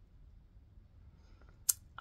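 Quiet room tone broken by a single short, sharp click shortly before the end.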